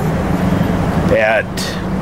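Road traffic noise with a steady low hum, clearest in the first second, under a man's speech that resumes near the end.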